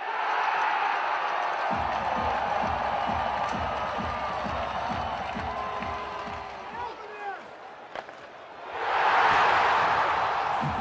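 Hockey arena crowd cheering loudly after a goal, with music beating under it. The cheer fades about seven seconds in, and a second loud cheer swells up near the end.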